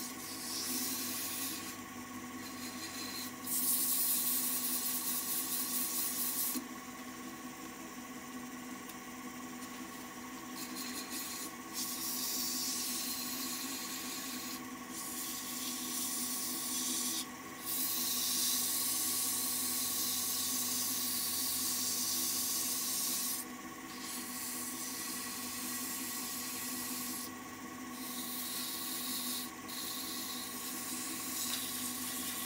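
A folded paper pad held against a maple spindle turning on a wood lathe, rubbing with a steady hiss over the lathe's hum. The hiss drops back briefly every few seconds as the pad is lifted and moved along, then returns.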